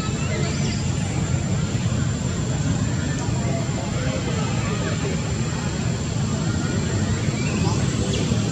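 A steady low rumble, like a distant motor, with faint voices in the background.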